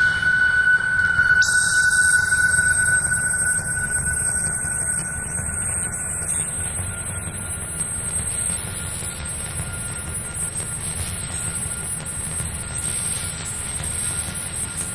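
Electronic drone music: a steady high whistling tone held over grainy hiss and a low rumble. The upper hiss thins in a band that slowly climbs over the first half, then fills back in.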